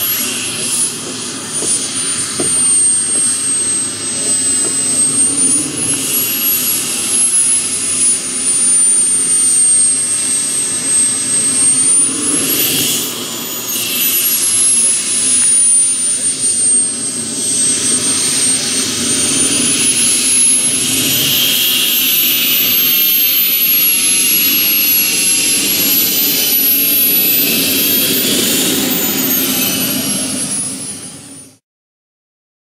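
Kerosene model jet turbine of a large-scale RC Hawker Hunter running at taxi power, a steady rush under a high-pitched whine. The whine rises and falls several times as the throttle is opened and eased back.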